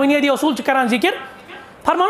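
A man speaking in a raised voice for about a second, then a short pause before he speaks again.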